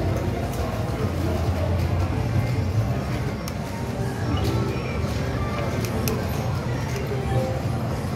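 Casino-floor din: slot-machine music and jingles over a steady low rumble, with background voices and a few sharp clicks in the middle.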